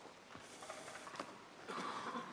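Quiet lecture-hall room tone with a few faint clicks, and a brief louder, breathy sound near the end.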